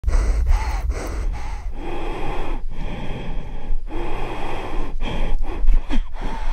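Heavy, rapid breathing close to the microphone from someone standing at a cliff edge about to jump: a string of loud in-and-out breaths about a second each, with wind rumbling on the microphone.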